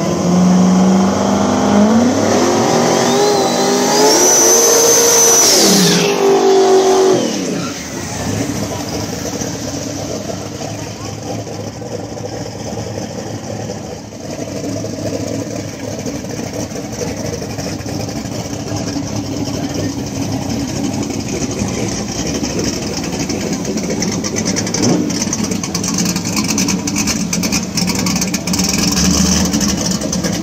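Boosted small-block drag car engine revving and accelerating hard, with a high whine that climbs in pitch, holds, then drops away about seven seconds in. After that, drag car engines run at a lower, steadier level.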